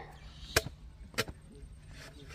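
Two sharp clicks, the first about half a second in and the second about two-thirds of a second later, as honeycomb is broken and cut away from a hive by hand. A faint low hum runs underneath.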